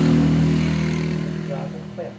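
A motor vehicle engine running steadily close by, loudest at the start and fading away, as it passes.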